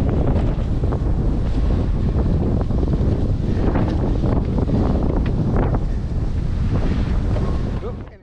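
Strong wind buffeting the camera microphone, a steady low rumble, with water splashing and hissing from the choppy sea passing under the foilboard in short bursts. It fades out right at the end.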